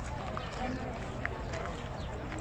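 Outdoor ambience: people talking in the distance over a steady rush of background noise, with a few short high chirps, the clearest just past halfway.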